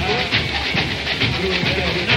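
A samba-enredo sung by massed voices over a samba school bateria: deep drums and a fast, steady rattle of small percussion.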